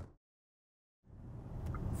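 Steady in-cabin road and tyre noise of an electric car at motorway speed on a wet road fades out to complete silence for about a second, then fades back in.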